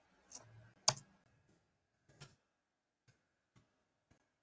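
A few sharp clicks, the loudest about a second in and another a second later, followed by a few faint ticks.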